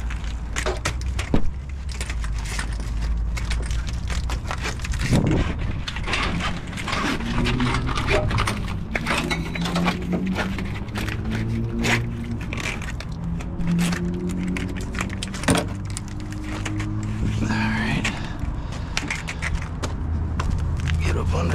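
Knocks, clicks and scrapes of an AC hose being worked loose and pulled out by hand, over a steady low hum. Music plays in the background, with held notes from about seven seconds in.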